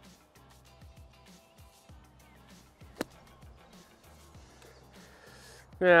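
A 60-degree sand wedge, face laid wide open, strikes the bunker sand under the golf ball in a high bunker shot: one sharp impact about three seconds in. Faint music plays underneath.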